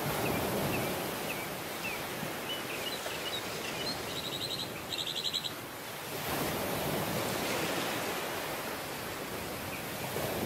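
Ocean surf breaking on a beach, a steady rush that swells louder about six seconds in. Small birds chirp faintly in the first few seconds, and a rapid high trill of chirps comes twice between about four and five and a half seconds in.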